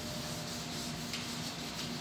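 A soft, steady rubbing noise.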